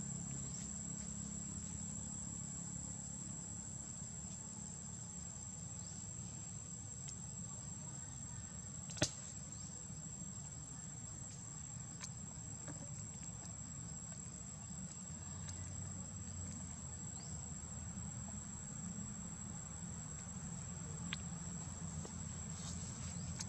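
A steady, high-pitched insect drone over a low background rumble, with one sharp click about nine seconds in.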